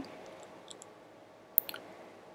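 A single sharp computer-mouse click about one and a half seconds in, over faint room hiss.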